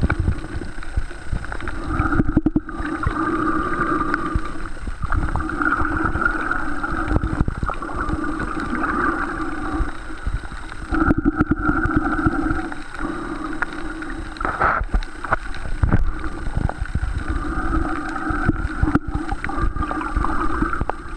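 Muffled underwater sound from a camera held below the surface: a low water rumble and handling knocks, with a hollow rushing sound that comes and goes every few seconds.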